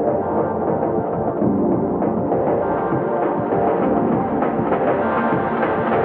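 Background music with drums and percussion, playing steadily.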